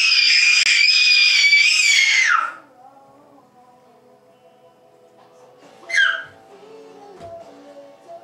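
A young child's loud, high-pitched squeal, held for about two and a half seconds and falling away at the end, then a second, shorter squeal that drops in pitch about six seconds in, over faint background music.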